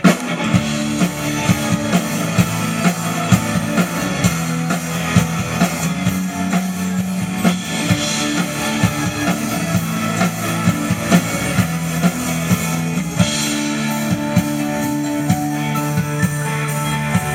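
Live pop-rock band playing: drum kit keeping a steady beat under acoustic guitar, bass and keyboards. The full band comes in suddenly at the very start.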